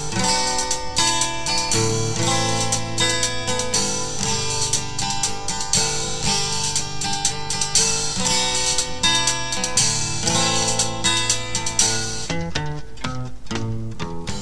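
Instrumental song intro: strummed acoustic guitar chords over bass, the chords changing every second or two, with a run of sharp percussive hits near the end.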